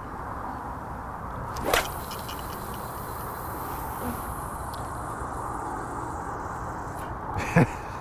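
A carp rod being cast hard with a four-ounce lead on straight-through mono line: one sharp swish about two seconds in, then a high hiss as the line runs out, fading over the next couple of seconds.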